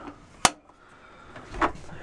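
A sharp click, then a softer clunk about a second later, as the latch of a two-way (propane/electric) RV refrigerator door is released and the door is swung open.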